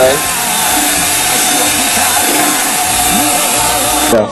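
Electric hand mixer running steadily with a high motor whine, stopping abruptly near the end.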